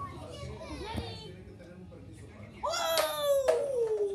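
A child's long, loud drawn-out exclamation about two-thirds of the way in, its pitch sliding steadily downward, with a single sharp knock partway through it. Before it, only faint voices.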